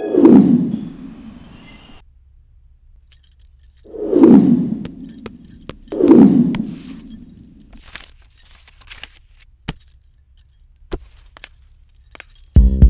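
Three loud, low whooshing hits that fall in pitch and die away over about a second each: one at the start, one about four seconds in and one about six seconds in. Scattered light metallic jingling clinks run through the second part.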